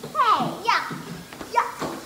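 Children shouting and squealing in rough play: several short, high-pitched cries that slide up and down in pitch.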